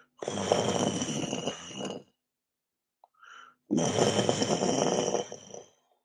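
A man's voice making two long, noisy, breathy vocal sounds in a vocal improvisation, each lasting about two seconds and each coming after a short breath in, with a thin high tone running through both.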